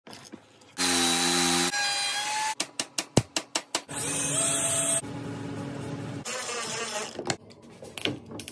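Quick succession of woodworking sounds, each lasting about a second: power tools running with a steady pitch, a rapid run of sharp knocks a little before halfway, then a drill boring through a pine guitar body about four seconds in.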